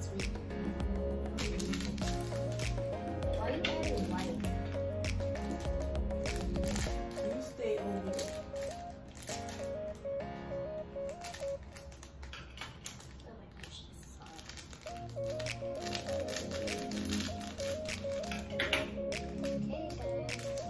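Background music with a repeating stepped melody over a bass line; the bass drops out about seven seconds in and returns near the end, with scattered light clicks throughout.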